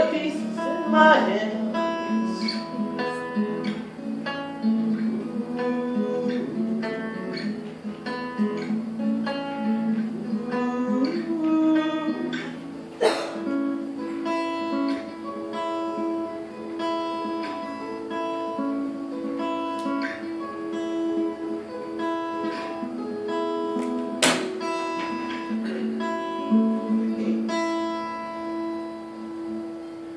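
Acoustic guitar played solo: a picked instrumental passage of ringing notes, with two sharp strums, one near the middle and one later on.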